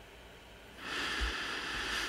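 A man's long breath out through the nose, a noisy exhale starting a little under a second in and lasting just over a second.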